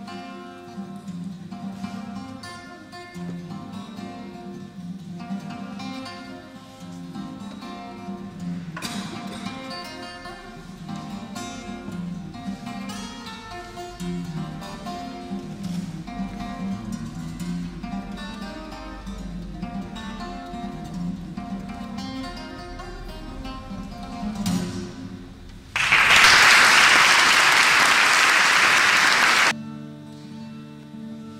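Solo acoustic guitar played fingerstyle: picked melody notes over a low bass line. Near the end the guitar gives way to about four seconds of loud applause that starts and stops abruptly.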